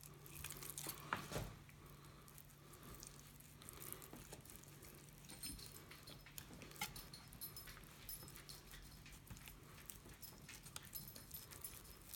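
Faint sounds of a fillet knife cutting through a northern pike fillet just beneath the Y bones: soft wet slicing with scattered small clicks, over a low steady hum.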